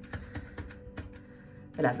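Plastic push-button on a Zanussi built-in oven's timer panel pressed repeatedly, a quick series of short clicks as the cooking timer is stepped up minute by minute.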